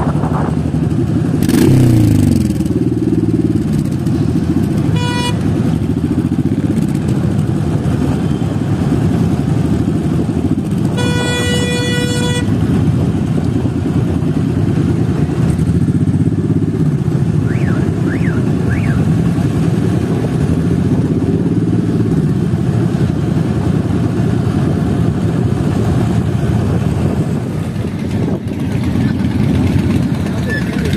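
Motorcycle engines of a riding column running steadily, with one engine's pitch falling about two seconds in. A short horn beep sounds about five seconds in, and a longer horn toot of about a second and a half around eleven seconds.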